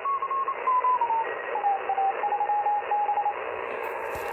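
Audio from a Yaesu FT-80C HF transceiver's speaker in CW mode on the 10-metre band: receiver hiss with a keyed Morse code tone. As the tuning knob is turned, the tone's pitch steps down over the first two seconds, then holds steady.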